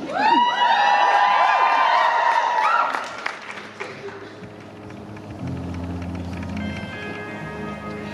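Electric Telecaster guitar playing a few notes that glide upward and ring on for about three seconds, then fade. Low held notes come in about five seconds in.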